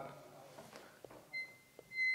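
A quiet pause in the room with a couple of faint clicks, and about halfway through a faint, high, steady beep-like tone that lasts under a second.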